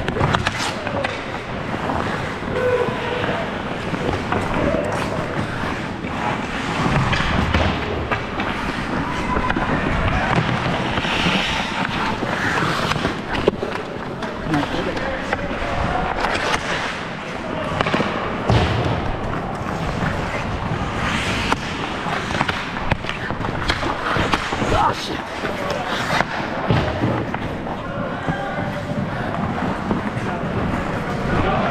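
Ice hockey play heard from a player's helmet: skate blades scraping and carving the ice, with frequent sharp clacks and knocks of sticks and puck, and players' voices calling in the background.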